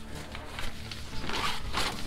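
Rustling of a waterproof allergy pillow case being picked up and handled, a few short brushing scrapes of the fabric.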